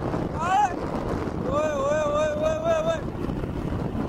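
Airflow rushing over the microphone of a powered paraglider (paramotor) in flight, with the engine running under it. A man gives a short rising call about half a second in, then a long wavering held 'oh' call in the middle.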